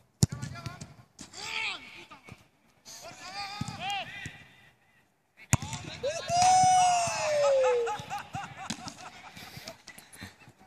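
People shouting and calling out, with a long drawn-out call that falls in pitch about six seconds in. A football is kicked sharply, once just after the start and again about five and a half seconds in.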